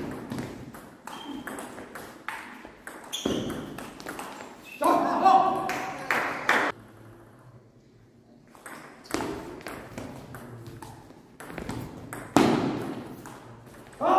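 Table tennis ball clicking sharply back and forth off the bats and table in fast rallies, echoing in a large hall, with a lull around the middle before the next serve. A voice calls out loudly about five seconds in.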